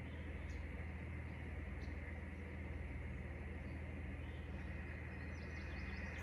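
Steady hiss and static from the Xiegu X6100 HF transceiver's speaker as it receives with no strong signal, with a low steady hum underneath.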